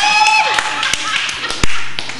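A group of people laughing, opening with one high, drawn-out laugh, with a few sharp hand claps in the second half.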